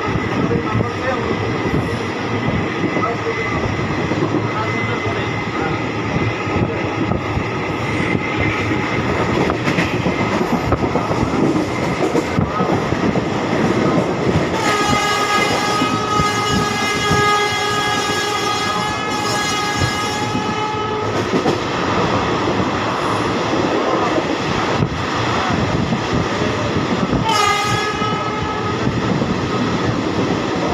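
Loud running noise of an Indian express train at speed, heard from an open coach doorway: wheels rattling over the rails. A train horn sounds a long blast of about six seconds in the middle, and a short one near the end.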